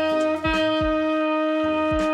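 A saxophone neck and mouthpiece played on their own, without the body of the horn, holding one steady note at an even pitch. It is the relaxed-embouchure F pitch aimed for as a neck warm-up.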